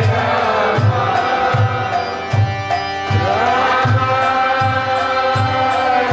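Kirtan: a group chanting a mantra together to clapping and a tambourine, over a steady drum beat with a stroke about every three-quarters of a second.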